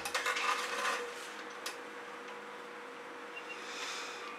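A click, then faint scraping as a flat swipe tool is drawn over wet acrylic paint on a canvas, dying away after about a second and a half, with a faint steady hum underneath.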